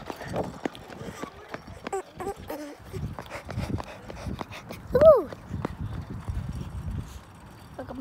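Walking footsteps and knocks from handling a phone: irregular taps with low rumbling. About five seconds in comes one short, loud, high-pitched cry that rises and falls in pitch.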